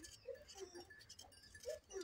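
Faint bleating of distant livestock: a few short, low calls.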